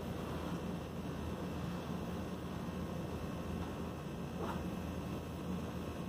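Steady low hum and hiss of background room noise, even throughout, with no distinct events.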